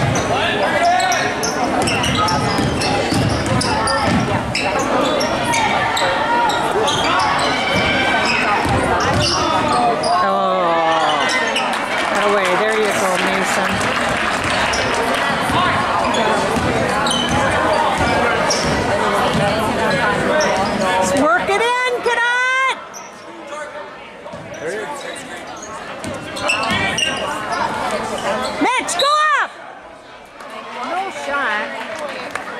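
Basketball game sounds in a large gym: a ball dribbled on the hardwood court and spectators talking and shouting. Brief rising squeaks, typical of sneakers on the floor, come about three-quarters of the way in and again near the end. The crowd noise falls off sharply after the first squeak.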